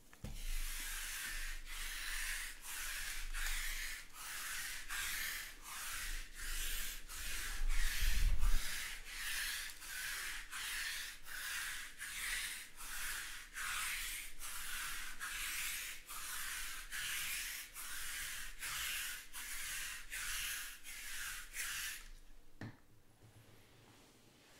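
Rhythmic rubbing strokes, about three every two seconds, that stop near the end, with a dull thump about eight seconds in.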